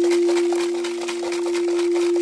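Crystal singing bowl ringing with one steady sustained tone, and a weaker lower tone fading out near the end.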